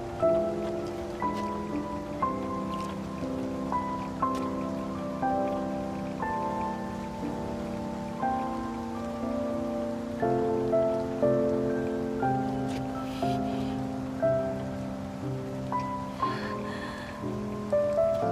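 Soft background music, a slow melody of single notes over held chords, with steady rain falling underneath.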